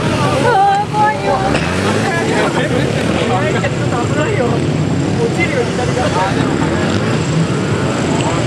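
A 2006 Honda CBR600RR's inline-four engine revving up and down again and again as the motorcycle accelerates and slows through tight turns.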